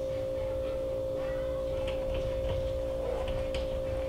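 A steady, unchanging high-pitched hum, with faint short scratches of a dry-erase marker drawing lines on a whiteboard.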